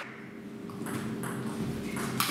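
Table tennis rally: the ball clicks lightly off the bats and table a few times, over a low steady hum in the hall.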